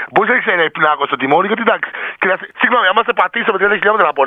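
Speech only: radio-show hosts talking continuously.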